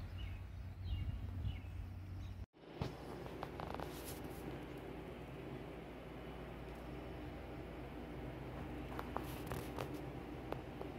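Quiet outdoor ambience with a low rumble and a few faint bird chirps, cut off suddenly about two and a half seconds in, then quiet indoor room tone with a few soft clicks and rustles.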